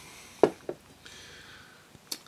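Mouth sounds of a man tasting a mouthful of beer: two short lip and tongue smacks about half a second in, the first louder.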